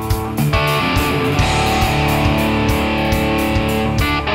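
Live rock band playing an instrumental passage: electric guitar chords over bass, with a steady drum beat of kick drum and cymbals. The guitar chords change about half a second in.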